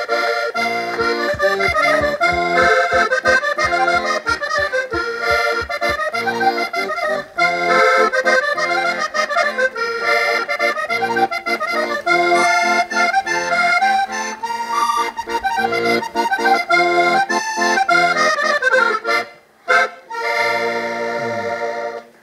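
Accordion playing the instrumental passage of a traditional cantares ao desafio tune, a melody over bass notes that pulse about three times a second in the first few seconds. It breaks off briefly twice near the end.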